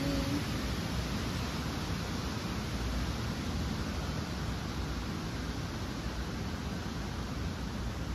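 Steady outdoor rushing noise, heaviest in the low end, with no distinct sounds standing out.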